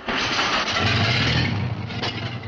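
A motor vehicle's engine starting abruptly and settling into a steady low-pitched run. It is loud enough to be called a noise to stop.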